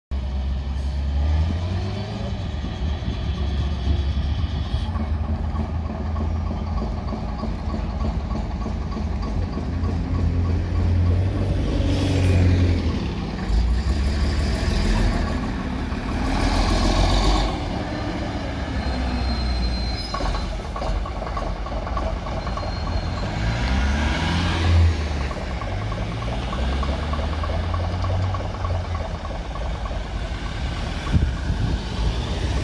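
A heritage single-deck bus's diesel engine pulls away and accelerates, with a deep rumble throughout. Its note rises and drops several times as it works through the gears.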